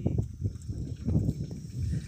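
A pair of bullocks walking while drawing a harrow through tilled soil: irregular low thudding of hooves and the dragging implement.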